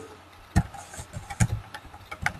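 Computer keyboard keys tapped in a quick, irregular run of about eight clicks as a word is typed.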